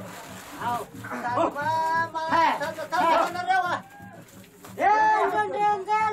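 Speech only: people's voices talking and calling out, with a short pause about four seconds in.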